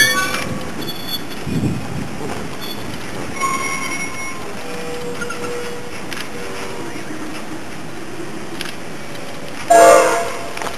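Slow train rolling past on the rails with steady wind noise on the microphone. Short squealing tones come about three and a half seconds in and again near the five-second mark, and a brief loud sound with several tones comes just before the end.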